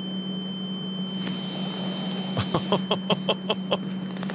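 A steady high-pitched ringing tone over a low hum: the ear-ringing sound effect of being knocked out. About two and a half seconds in comes a quick run of about eight short beeps.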